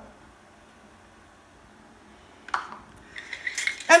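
Quiet kitchen room tone, then a single sharp knock about two and a half seconds in as a plastic canning funnel is set down on a granite countertop.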